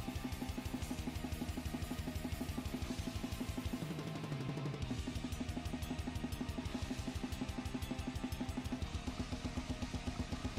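Heavy-metal drum kit playthrough over the song's backing track. Very fast, even bass drum strokes run throughout, with snare and cymbals on top and the band's music underneath.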